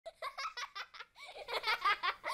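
Children laughing: a quick run of short, high laughs in the first second, then giggles that rise and fall in pitch.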